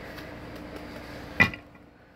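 A deck of tarot cards being shuffled by hand: a soft steady rustle, then one sharp click about one and a half seconds in.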